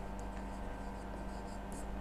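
Faint scratching and tapping of a stylus writing a word on a pen tablet, over a steady low hum.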